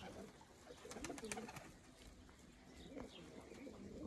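Domestic pigeons cooing faintly now and then, over a quiet background hiss.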